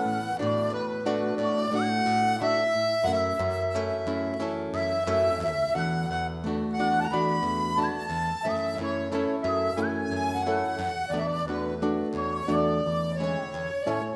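Instrumental interlude of a Brazilian sertanejo-style song: a flute plays the melody over accordion and plucked nylon-string guitars, in a slow, steady waltz-like flow of held and moving notes.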